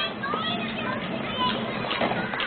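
Several young children's voices calling out and chattering at play, overlapping, with no clear words.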